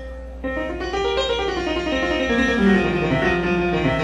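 A live band playing, with an electric keyboard carrying a melodic line that runs downward in pitch through the middle, over a steady low hum.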